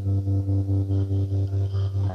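Electric guitar through effects holding one sustained low note or chord that pulses steadily in loudness about four times a second.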